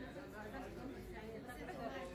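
Indistinct chatter of several people talking in the background.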